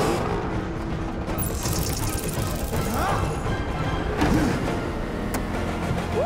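Film score playing over car-chase sound effects: a sports car's engine running under the music, with a sharp hit about five seconds in.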